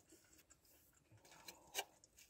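Near silence: quiet room tone with a few faint clicks, the clearest near the end.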